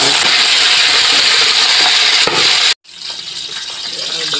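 Pork belly deep-frying in hot oil in an aluminium pot, a loud steady sizzle. It cuts off suddenly a little under three seconds in and comes back quieter.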